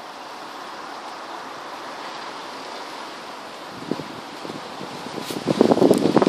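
Steady wind noise on the microphone with leaves rustling. From about four seconds in, a rapid crackling rattle sets in and grows loud near the end.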